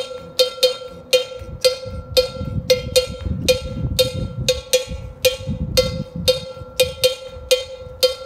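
Single metal bell of the cowbell type struck with a wooden stick, playing the ordinary samba rhythm as a steady repeating syncopated pattern of ringing strikes, about three a second.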